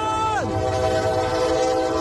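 Train horn sounding a sustained chord at a railroad crossing; its upper notes fall away in pitch about half a second in while the lower notes hold steady.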